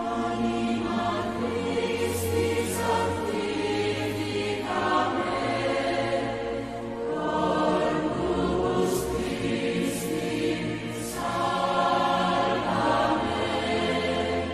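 A choir singing a slow hymn over low accompanying notes, with long held chords that change every couple of seconds and the hiss of sung 's' sounds standing out now and then.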